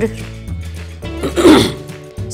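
Soft background music, with a person clearing their throat in one short, loud burst about a second and a half in.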